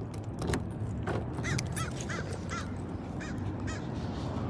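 A run of about six short bird calls, each rising and falling in pitch, over a steady low rumble, with a few clicks in the first second.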